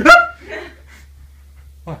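A young man's short, loud startled yelp as he is jolted awake, followed by a brief mumble and a spoken "what?" near the end.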